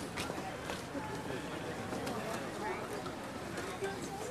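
Indistinct chatter of several people talking at once close by, no single voice standing out, with a few short clicks.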